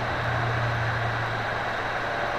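Steady low hum with hiss, heard through the HDZero goggles' built-in microphone, holding an even level throughout.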